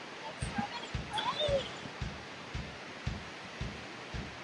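Steady rushing of a tall cascading waterfall heard from afar. Over it come a run of soft low thuds, about two a second, and a short whining call that rises and falls a little over a second in.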